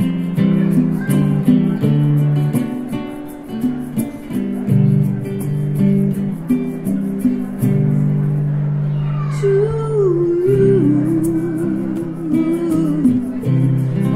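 Acoustic guitar strumming chords in an instrumental passage of a live song. A wavering melodic line with vibrato joins about ten seconds in and fades shortly before the end.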